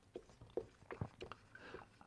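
Faint, irregular little taps and scratches of a marker pen writing on a whiteboard.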